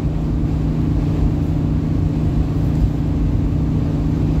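Steady engine drone and road rumble heard from inside the cabin of a car cruising along at an even speed.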